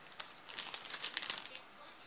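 Packaging crinkling in a quick run of rustles as it is handled, from about half a second in until shortly before the end.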